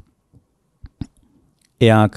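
A pause in a man's speech into a close microphone, broken by a couple of faint mouth clicks about a second in; his voice resumes near the end.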